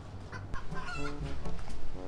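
Chickens clucking in a run of short, separate calls.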